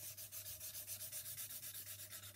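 Brown felt-tip marker scribbling rapidly back and forth on a cardboard kitchen-roll tube, an even scratchy rubbing of about six strokes a second.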